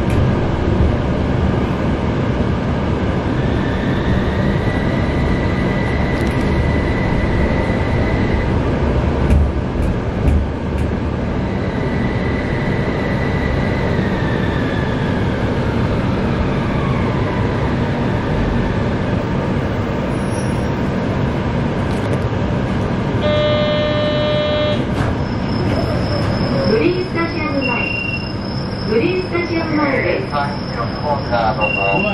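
Light-rail tram running, with a steady rumble of wheels and motors. A high motor whine rises and holds, then later slides down in pitch as the tram slows. Near the end there is a steady electronic beep of about a second and a half, followed by the start of an onboard voice announcement.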